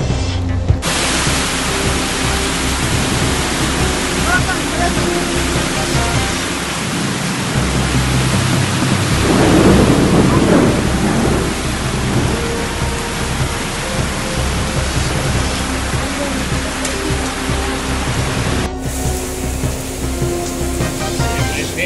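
Heavy rain pouring in a storm, a dense, steady hiss of rainfall with a louder swell about halfway through.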